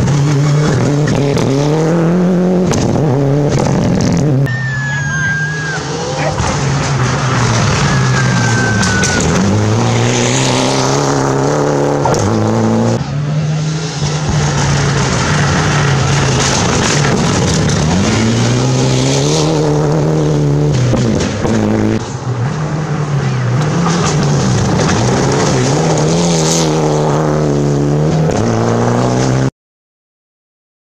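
Rally car engines revving high and dropping back again and again as the cars brake and accelerate through a gravel corner, one car after another. The sound cuts off suddenly near the end.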